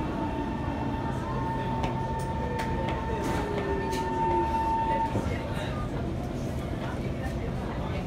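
Inside a C151 MRT train pulling into a station: a steady rumble from the car with a falling whine from the traction motors as the train brakes. A steady higher tone cuts off about five seconds in as the train comes to a stop.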